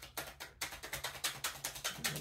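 A deck of handmade tarot cards being shuffled in the hands: a rapid patter of crisp card clicks, thickening to about eight a second after the first half second.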